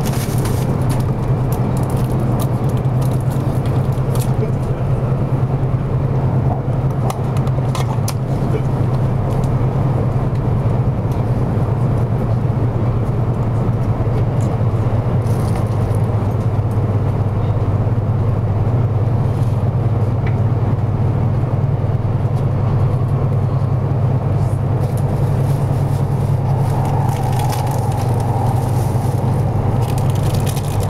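Steady running noise inside the passenger cabin of a 200 series Shinkansen train: a continuous low rumble and hum with scattered faint clicks and rattles. A faint higher tone joins near the end.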